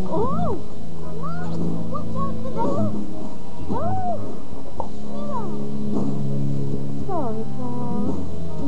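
Music with sustained low notes, and short rising-and-falling gliding tones above them that recur every second or so.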